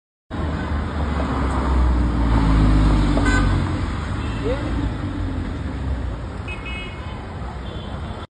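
Porsche 911 flat-six engine running loud in slow city traffic, its low rumble building to a peak about two to three seconds in and then easing off. A few short high-pitched horn toots from surrounding traffic sound near the end, over street voices.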